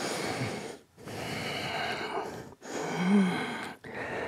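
A man breathing audibly with the effort of a standing leg-kick exercise: three long breaths in and out, the last carrying a short voiced grunt.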